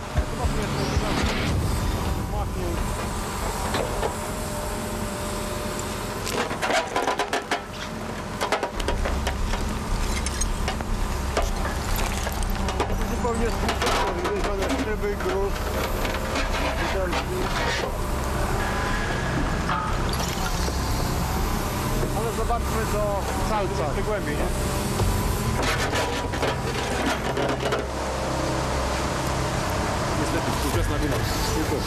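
Backhoe loader's diesel engine running under load as its bucket digs into soil, the engine louder from about nine seconds in, with scattered knocks and scrapes of the bucket against earth and roots.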